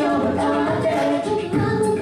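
Large mixed choir singing a cappella in close harmony, voices only and no instruments, holding sustained chords that shift about a second and a half in.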